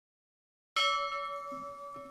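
A bell-like chime struck once, about three quarters of a second in, after silence; its several tones ring on and fade slowly.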